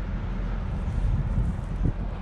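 Low, steady rumble of semi-trucks going by on the highway, with wind buffeting the microphone.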